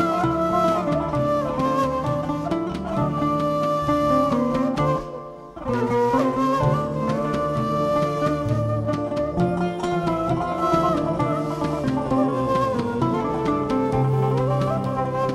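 End-blown flute playing an ornamented traditional Turkish melody, with a plucked-string accompaniment. It pauses briefly about five seconds in.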